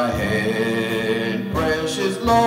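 A man singing a slow hymn into a microphone, holding long, steady notes with a short break about one and a half seconds in.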